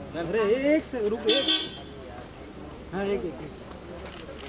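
People talking close by, with a short car horn toot about a second and a half in.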